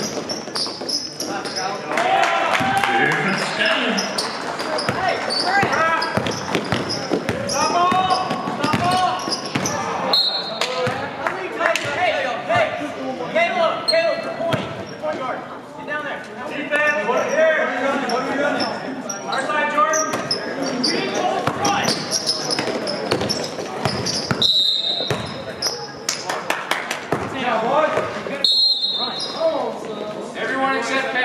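Basketball game sounds in an echoing gym: the ball bouncing on the court, sneakers squeaking, and players and spectators shouting and talking without clear words. A referee's whistle sounds briefly about a third of the way in and twice near the end.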